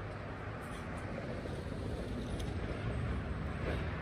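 Steady outdoor traffic noise from a nearby street, a low even rumble that swells slightly.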